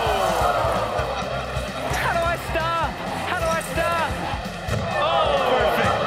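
Background music with a low beat, and a group of people shouting and exclaiming over it, including a long falling yell near the start.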